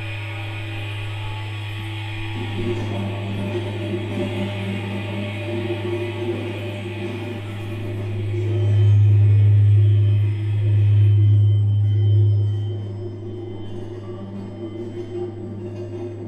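A sustained low drone tone with fainter steady tones above it. It swells louder from about eight seconds in, dips briefly, holds until about twelve seconds, then eases back. The higher tones fall away near the end.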